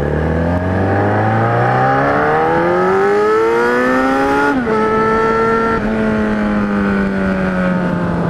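Kawasaki Z1000 inline-four engine running through a newly fitted 4-into-1 exhaust with its baffle insert in, accelerating under way. The pitch climbs steadily for about four and a half seconds, drops sharply at an upshift, then holds fairly steady.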